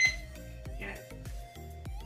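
Background music with a steady beat, and right at the start a short, high electronic beep from a wooden LED digital alarm clock as its set button switches it to display mode 2.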